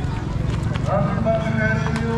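Voices of people talking in the open air over a steady low rumble, with a run of quick clopping knocks.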